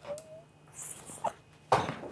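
A person whimpering while crying: a short, high, slightly rising whine right at the start, then sniffs and breathy sobs, the loudest near the end.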